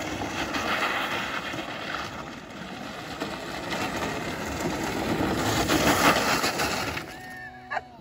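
Go-kart tyres crunching over loose gravel as the electric kart drives around the lot, growing louder to about six seconds in and dropping away near the end.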